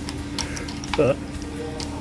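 A few light clicks as a plastic laser-nozzle indicator tag is handled and flipped over on its metal hook.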